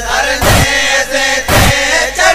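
A noha, a mourning lament, sung by male voices in long held chanted lines over a heavy beat that falls about once a second, twice here.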